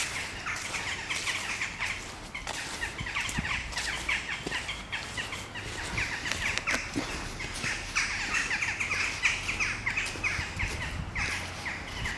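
Many birds chirping continuously, a busy chatter of short, quick high notes that never stops.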